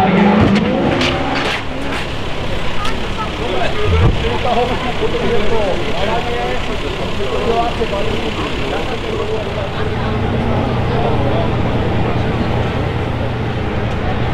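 A rally car's engine revving as it slides through a tyre chicane, with a few sharp knocks in the first couple of seconds. Then several people talking over one another, and from about ten seconds in a steady low engine hum.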